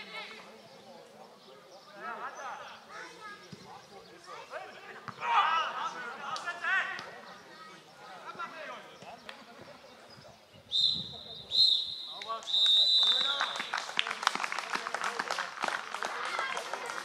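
Referee's whistle blown three times, two short blasts and then a longer one, the usual pattern of the final whistle, followed by clapping. Before the whistle, players shout to each other on the pitch.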